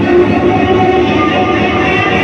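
Live punk band playing loud, a dense sustained wall of distorted sound with steady droning tones and no clear drumbeat.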